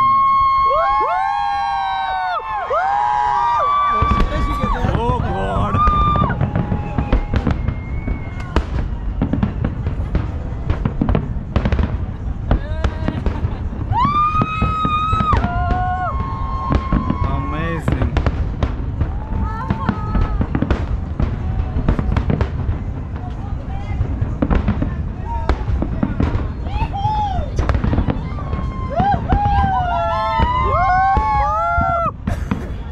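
Aerial fireworks bursting in a dense, continuous barrage of deep booms and sharp bangs, starting about four seconds in.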